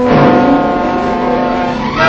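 Orchestral title music led by brass: a full chord comes in at the start and is held, with the orchestra continuing under it.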